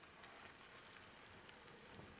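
Faint crackle of car tyres rolling slowly over a gravel driveway, a soft patter of small ticks.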